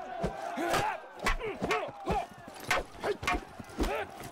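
Fight-scene sound effects from a staff duel: a rapid series of sharp weapon strikes and clashes, about a dozen, over a crowd shouting and yelling.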